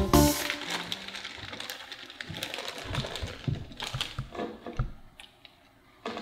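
A music note cuts off at the start. Then comes the crinkling of a plastic bag of veggie crisps and the crunch of crisps, a string of small irregular clicks and crackles that thins out near the end.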